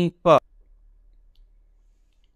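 A man's voice ending a recited line of scripture in the first half-second, then a pause of about a second and a half with only a faint low hum.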